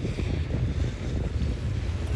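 Wind buffeting the camera's microphone: an uneven low rumble with a fainter hiss above it.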